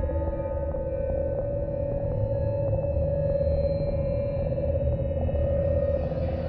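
Electronic music, psytrance fused with drum 'n bass: an ambient passage with a steady warbling synth tone over deep bass. A hiss swells in near the end.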